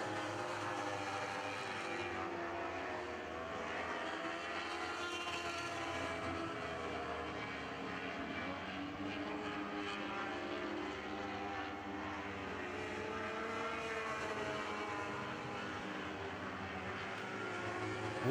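A field of Lightning Sprint cars, each powered by a 1,000cc motorcycle engine, running flat out around a dirt oval. Several engine notes overlap and drift in pitch as the cars circle the track.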